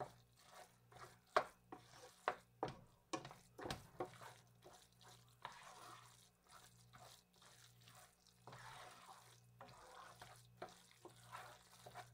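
Wooden spoon stirring rice in a nonstick frying pan: faint, irregular light knocks and scrapes of the spoon against the pan, over a low steady hum.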